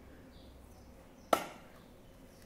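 A single sharp snap a little over a second in: the plastic toy capsule of a Kinder Surprise egg being popped open by hand.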